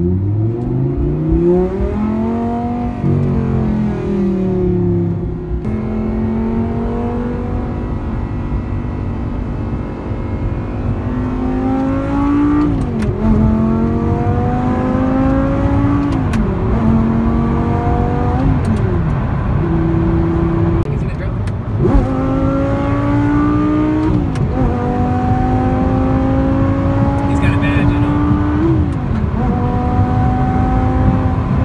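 Car engine heard from inside the cabin, accelerating through the gears: its pitch climbs steadily and then drops sharply at each upshift, several times over.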